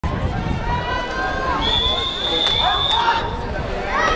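A referee's whistle blown in one long, steady high note for over a second, the long whistle that calls swimmers up onto the starting blocks, over the chatter of voices around the pool.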